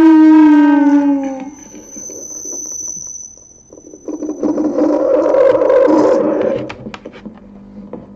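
Distorted feedback from a contact microphone held to a desktop speaker and run through a Boss DS-1 distortion pedal: a steady pitched tone that slides down and dies out about a second and a half in, then a faint high whine. From about four seconds a loud, rough distorted buzz sounds for nearly three seconds as the mic is pressed to the speaker, followed by a few clicks.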